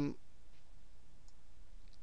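A few faint computer-mouse clicks over a low, steady room hum.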